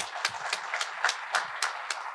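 Applause from a few people, with clear separate claps at about three to four a second.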